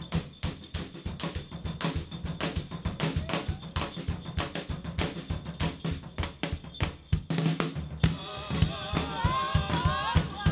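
A drum kit is played in a fast, dense pattern of bass drum, snare and cymbal hits during an instrumental stretch of an indie-folk song. Near the end, voices come back in singing over the drums.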